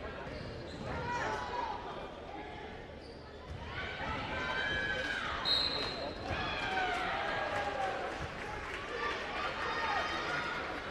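Basketball dribbled on a gym's hardwood floor amid shouting voices, with a short, high referee's whistle about five and a half seconds in, calling a shooting foul.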